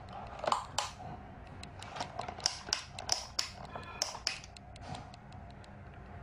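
Irregular small plastic clicks and taps from handling the opened plastic base of a table fan and its wiring, thickest in the first second and again around the middle.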